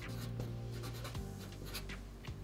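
Black Sharpie permanent marker writing on paper: a run of short, irregular felt-tip strokes as letters are drawn, over quiet background music.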